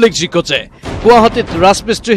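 Speech: a news narrator's voice speaking continuously in quick syllables.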